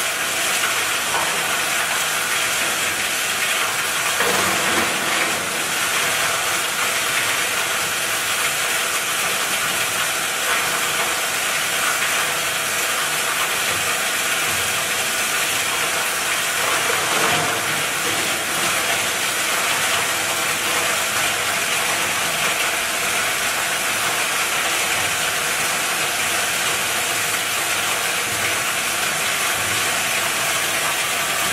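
Plastic pipe granulator running while plastic pipe is fed into its hopper and chopped up by the rotor knives: a loud, steady grinding hiss.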